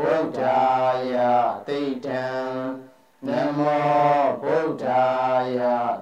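A voice chanting a Buddhist devotional chant in long held melodic phrases, with short breaks between phrases and a longer pause about halfway through.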